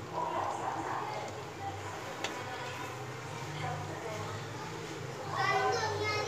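A metal skimmer spooning cooked rice into a pan of chicken gravy: faint soft scraping and one light click about two seconds in, over a steady low hum. Near the end a brief high-pitched voice sounds in the background.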